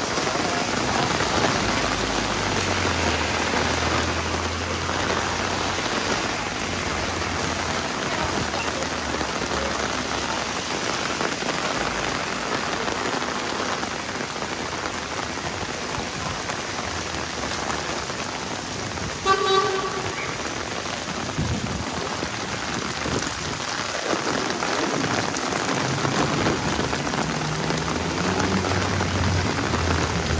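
Heavy rain falling steadily on pavement and road, a continuous hiss, with the low rumble of passing traffic near the start and end. About two-thirds of the way in, a vehicle horn gives one short toot.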